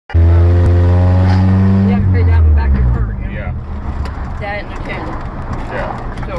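Road and engine noise inside a moving car. It opens with a loud, steady low drone that starts abruptly and stops about two and a half seconds in.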